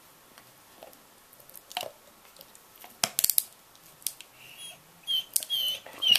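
Weimaraner puppy gnawing a chew bone: sharp clicks and crunches of teeth on the bone, loudest in a quick cluster about halfway through. In the last couple of seconds the dog gives several short, high-pitched whining cries as it chews.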